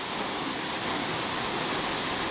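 Steady rushing outdoor noise, even and without distinct events.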